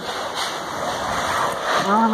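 Volcanic steam venting from cracks in the ground with a steady rushing hiss. A man's voice comes in near the end.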